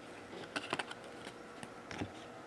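Trading cards being flipped through by hand: light clicks and snaps of card against card, a cluster of them about half a second in and another near the end.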